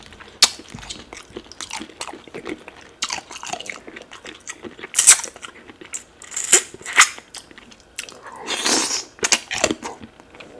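Close-miked eating sounds of a person chewing tilapia fish in pepper soup eaten by hand: wet chewing with sharp smacking clicks every second or so, and a longer sucking sound about eight seconds in.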